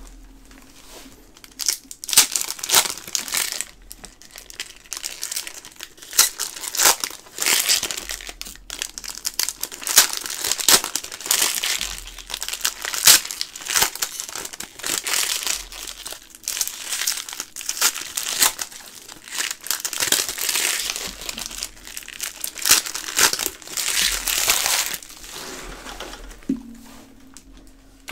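Foil wrappers of 2019-20 SP Authentic hockey card packs crinkling in irregular bursts as the packs are torn open and handled.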